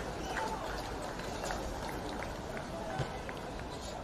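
Outdoor background noise with faint, indistinct distant voices, slowly fading.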